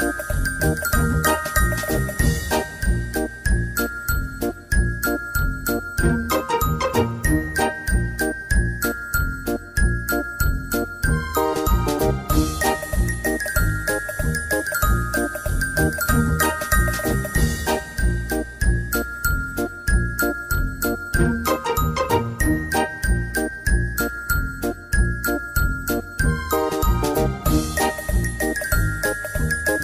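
Background music: a high melody of short notes over a steady beat, its phrase repeating about every eleven seconds.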